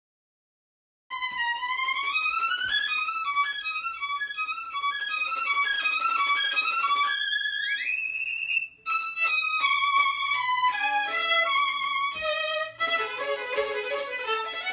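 Two violins playing a quick passage together, starting about a second in, with a fast upward slide about seven seconds in and a brief break just before nine seconds.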